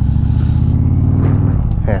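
Motorcycle engine running steadily with a fast, even low beat, heard from the rider's own bike, with wind rush over the microphone.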